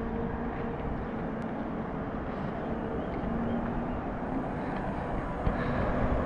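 Steady rushing background noise with a faint low hum running through it.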